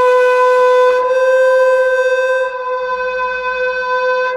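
Music: a long, steady note held at one pitch by a wind instrument, with a fainter low tone joining about three seconds in.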